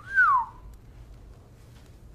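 A man's wolf whistle: a quick rising note, then a second note that rises and glides down, over within about half a second.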